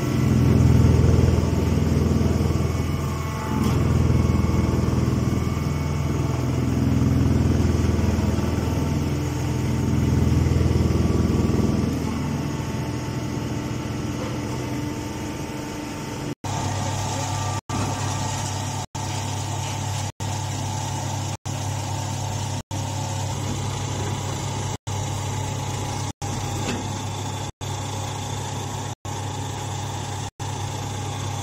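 Straw baling machine running with a steady low mechanical hum that swells and eases every few seconds. About halfway through the sound changes to an even hum broken by very short dropouts a little over once a second.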